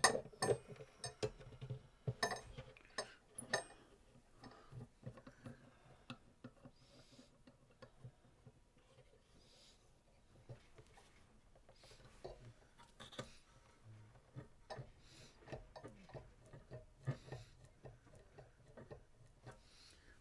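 Faint, irregular small clicks and taps of metal clamps being fitted and their thumbscrews turned down on a guitar bridge during a glue-up, busiest in the first few seconds.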